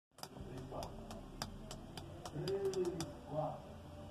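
Light, sharp clicks at roughly three a second over low murmuring voices in a room, before any drumming starts.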